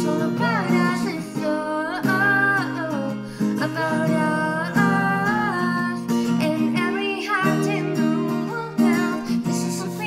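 Acoustic guitar strummed in chords, with a voice singing a melody over it.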